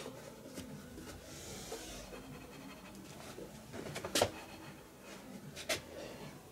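Quiet handling sounds as a laminate-underlay sheet is worked into a metal-stud wall frame: a faint rustle, then two short knocks a second and a half apart.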